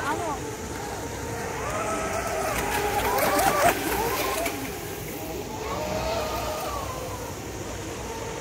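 Radio-controlled model speedboats running fast on the water, their motors whining in pitches that rise and fall as they pass. The sound is loudest a little past the middle, then eases off.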